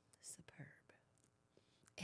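Near silence, with a few faint, short breaths about half a second in: a person exhaling after swallowing a sip of straight tequila.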